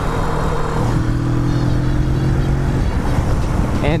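Riding at highway speed on a 2016 Kawasaki Vulcan S 650, heard from the rider's helmet: steady wind rush and the parallel-twin engine running at cruise. A steady engine drone holds for about two seconds, starting about a second in.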